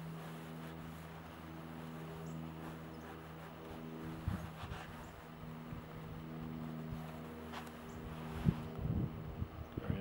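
A steady low hum from a running motor, with a few light knocks in the last couple of seconds as the throwing line is wound onto its plastic line winder.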